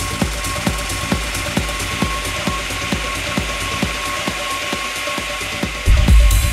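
Techno in a breakdown: sharp percussive ticks about twice a second over a held high tone, with a rising hiss sweep building as the bass thins out. Right at the end the full kick drum and bass come back in, much louder.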